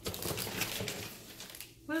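Crinkling of a protein bar's plastic wrapper as it is handled: a quick run of small crackles that stops near the end, when a woman starts to speak.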